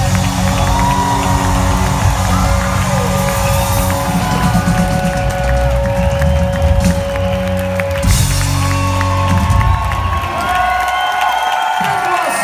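Live rock band of electric guitars, drum kit and keyboards playing the closing bars of a song. The band stops about ten seconds in, leaving the audience cheering in a large hall.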